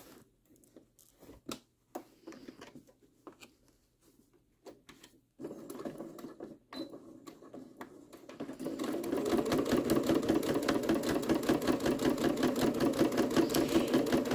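Domestic sewing machine topstitching along a zipper through quilted patchwork fabric. It starts up a little past halfway and then runs steadily with a rapid, even needle rhythm. Before that come only a few faint handling clicks as the fabric is turned.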